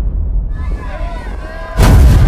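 A sudden loud blast like an explosion or gunshot near the end, over the fading low rumble of an earlier one. Faint voices call out between the two.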